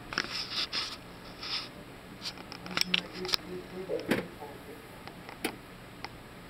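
Indistinct background voices in a small room, with several sharp clicks and taps scattered through.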